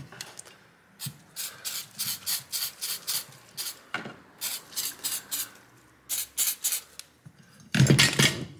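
A spray can of cleaner fired in many short hissing bursts onto a graphics card's plastic blower cooler shroud and fan. The bursts come a few per second in three runs, with brief pauses between them.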